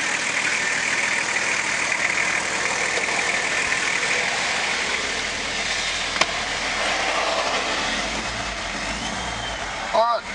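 Nissan Patrol Y61's RD28T six-cylinder turbo diesel idling steadily, with one sharp click about six seconds in. Its low rumble grows stronger near the end.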